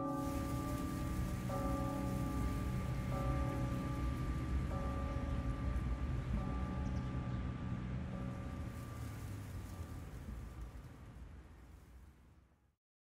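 Film score of held, sustained chords that change about every second and a half, over a steady rushing noise like rain, all fading out near the end.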